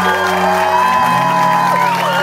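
A live band playing an instrumental passage: electric guitars and bass, with sustained lead notes that slide and bend in pitch over held bass notes, the bass changing note about halfway through.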